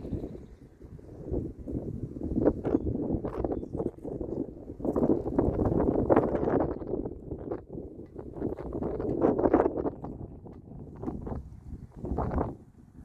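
Wind buffeting the microphone in uneven gusts, a rumbling noise that swells and fades, with scattered short knocks and crackles through it.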